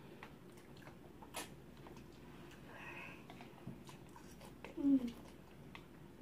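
Quiet eating of ramen noodles: faint clicks of forks against plastic bowls, with chewing and slurping. A short low vocal sound about five seconds in is the loudest moment.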